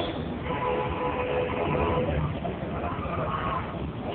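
Steady road traffic rumble. A held steady tone sounds over it from about half a second in to about two seconds in.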